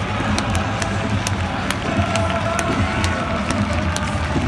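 Football supporters in a stadium singing a chant together, with sharp beats about twice a second carrying the rhythm.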